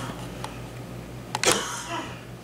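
A steady low hum with two faint clicks, then one short sharp noise about one and a half seconds in.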